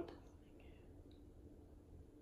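Near silence: quiet room tone, with a faint breathy sound about half a second in.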